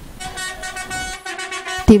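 Bus horn blowing a steady held tone whose pitch shifts once about a second in.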